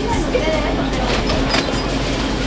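Steady café background noise with a low hum and faint voices.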